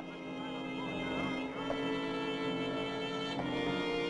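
Orchestral film score: held string chords that swell in the first second and move to new notes every second or so.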